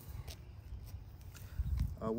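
A few light footsteps as shoes shift on a concrete sidewalk, over a low rumble that swells near the end.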